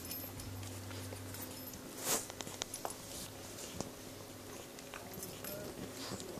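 Puppies shifting and nuzzling against their mother dog on a bed: faint rustling and small movement noises, with one brief louder rustle about two seconds in.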